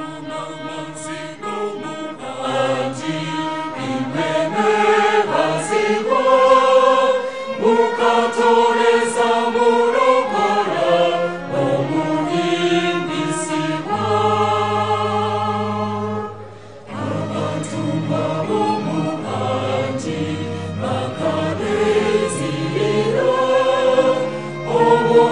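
Choral music: a female soloist sings in front of a choir, with string accompaniment. The music begins suddenly and dips briefly about two-thirds of the way through, between phrases.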